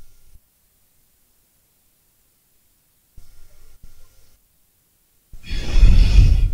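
Mostly silence, then near the end a loud, breathy rush of air from a man's exhale, close to the microphone.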